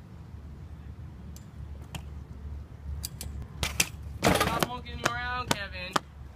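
A few sharp clicks, then a loud clatter about four seconds in as a BMX bike from a bailed 360 hits the concrete. A person's voice then shouts drawn-out for the last second and a half.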